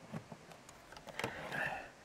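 Faint clicks and plastic handling noise as a USB cable is plugged into a small plastic AA battery charger, with a soft rustle in the second half.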